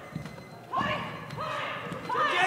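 Two short, high-pitched kihap shouts from Tang Soo Do sparring competitors, each held about half a second, about a second apart, with feet thudding on a wooden gym floor.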